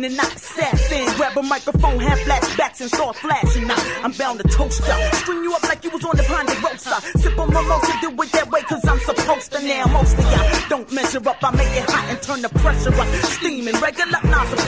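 Hip hop track: rapping over a beat with heavy, repeated bass hits.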